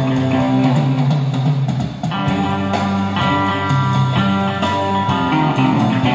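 Sunburst Stratocaster-style electric guitar played through a small practice amplifier: an instrumental passage of held notes and chords, changing every second or two, with a brief dip about two seconds in.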